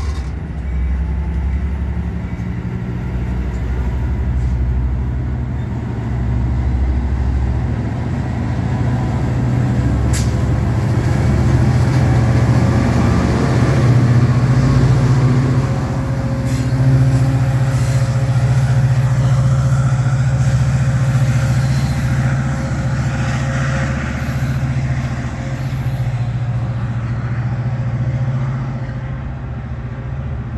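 A stationary EMD F59PHI diesel locomotive idling, a steady low engine drone that grows loudest around the middle as the locomotive is passed, with a brief sharp hiss about ten seconds in.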